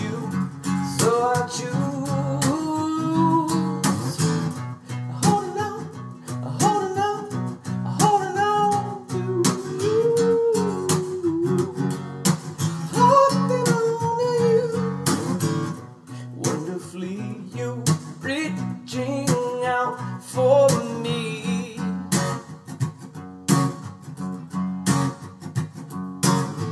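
Acoustic guitar strummed in a steady rhythm while a man sings over it.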